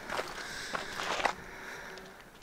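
Footsteps on a dirt and gravel mountain trail: about four steps in the first second and a half, then the steps fade.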